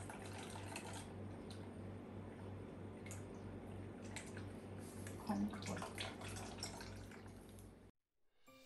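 Syrup trickling and dripping out of a tilted can of fruit cocktail into a strainer, with a few light clicks of the can. Faint.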